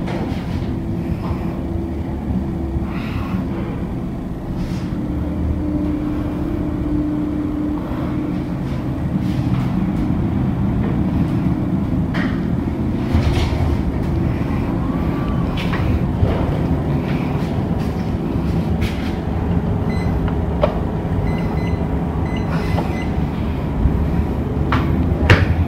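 Schindler elevator car travelling downward: a steady low rumble and hum of the ride heard from inside the car, with occasional light clicks and knocks.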